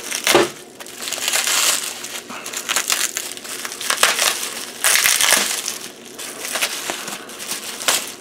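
Plastic bubble wrap crinkling and crackling in irregular bursts as it is slit with a knife and pulled open by hand.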